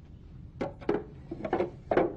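A plastic juicer jug being set back into an electric juicer, making a few short knocks and clinks. The last knock is the loudest.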